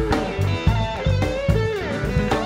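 Live blues band playing an instrumental passage: a Fender Telecaster electric guitar leads with bent notes, one bending down near the end, over bass guitar and a drum kit keeping a steady beat.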